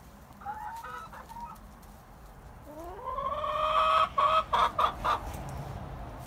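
Hen clucking softly, then a long call about three seconds in that rises in pitch, holds, and breaks into a few short clucks.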